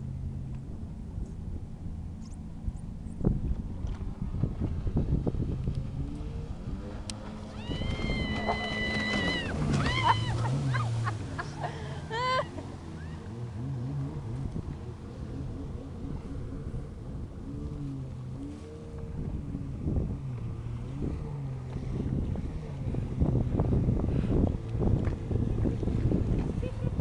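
Jet ski engine running with a steady drone that rises and falls in pitch as the throttle changes, over wind and water noise on the microphone. A few brief high-pitched calls or squeals come about eight to twelve seconds in.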